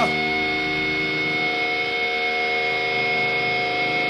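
Amplified stage sound: several steady ringing tones held together, a sustained drone from the band's electric guitars and amplifiers, over an even noise from the festival crowd.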